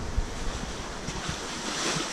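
Water splashing and sloshing in a large fish tank as a big pacu thrashes in a cloth net: a steady churning rush of water.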